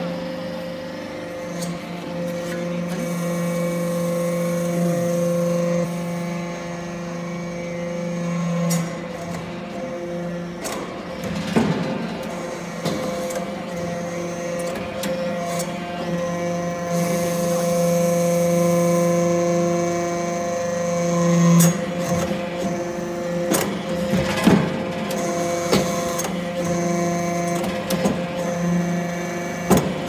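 Hydraulic metal-chip briquetting press running: a steady machine hum made of several held tones, which shift in strength every few seconds as the press cycles. A few sharp metallic knocks come through as briquettes are pressed and pushed out, the loudest about two-thirds of the way in.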